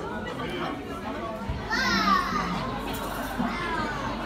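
Background chatter of diners, with a child's high-pitched voice calling out over it a little under two seconds in, its pitch sliding downward, and a fainter falling call near the end.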